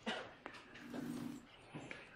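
Faint room sounds in a pause: a short rustle at the start, a click about half a second in, then a brief low murmur like a hummed 'mm'.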